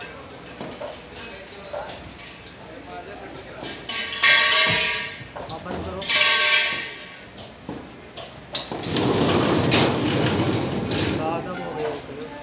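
Stainless-steel sofa-cum-bed being folded and pushed shut: two loud metal scrapes a couple of seconds apart about halfway through, then a longer rumble near the end as the pull-out frame slides in.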